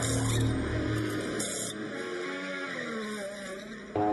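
Transition music between podcast segments, with a deep low part that drops out about a second in and pitched notes that carry on, growing gradually quieter.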